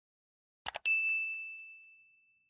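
A quick double mouse click, then a bright notification-bell ding that rings out and slowly fades, as in a subscribe-button animation.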